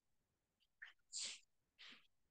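Near silence on a video call, broken by three faint, short hissy noises: one a little before a second in, one just after, and one near the end.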